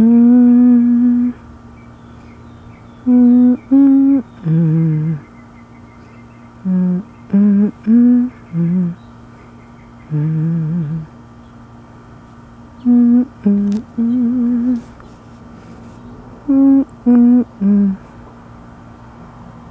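A person humming a slow, wordless tune in short phrases of held notes, with pauses between the phrases.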